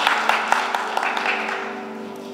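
A soft, sustained keyboard chord held under the service, with a burst of clapping, about four claps a second, that fades out over the two seconds.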